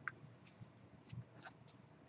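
Near silence: faint room tone with a few scattered light clicks and scratchy rustles.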